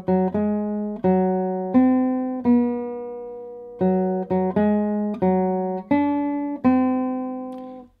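A nylon-string guitar played out of tune, the sound of a guitar that has not been tuned. It plays a short tune of about a dozen plucked notes, each left to ring and die away, with one held for over a second in the middle.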